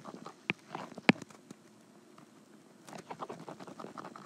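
Apple Pencil tip tapping and stroking on an iPad Pro's glass screen while shading: a few sharp taps in the first second or so, then soft scratchy strokes near the end.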